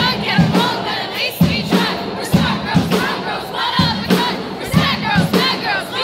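Live pop concert heard from among the audience: many voices in the crowd singing and shouting along, louder than the band's music, with sharp hits scattered throughout.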